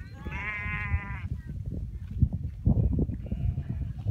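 Bleating from a grazing herd of cashmere goats and sheep: one long, wavering bleat just after the start and a fainter one near the end, over steady low background noise.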